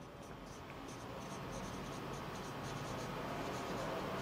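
Marker pen writing on a whiteboard: a run of faint, short scratchy strokes as the words are written.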